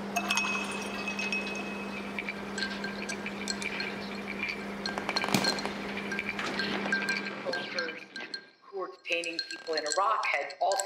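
Glass clinking and rattling, a few sharp clinks, over a steady low hum that cuts off abruptly about seven seconds in. A man's voice starts near the end.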